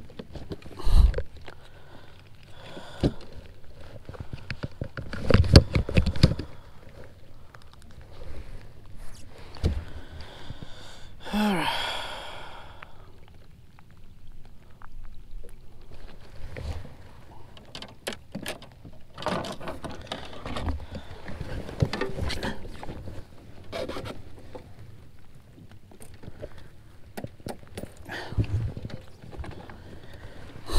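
Intermittent knocks, thumps and scrapes on a plastic fishing kayak as a caught largemouth bass and a measuring board are handled. A brief sound that drops in pitch comes about eleven seconds in.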